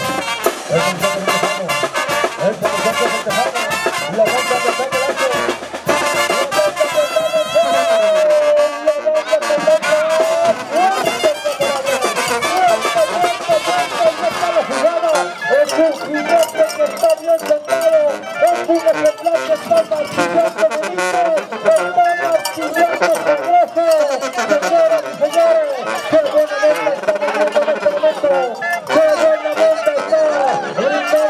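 Brass band music playing, with trumpets and trombones.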